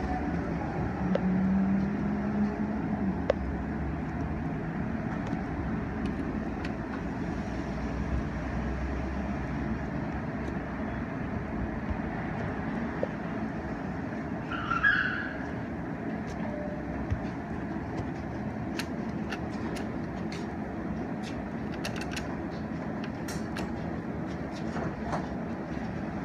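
Steady low background rumble, with a brief higher-pitched sound about fifteen seconds in and a scattering of light clicks near the end.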